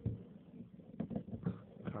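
Playing cards being handled and sorted by hand: a few faint, irregular clicks and taps of card against card.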